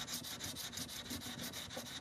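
Sandpaper rubbed by hand over a wooden guitar headstock: faint, quick back-and-forth sanding strokes, several a second.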